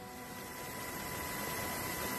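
Steady hiss with a faint electrical hum and thin high tones, slowly growing a little louder.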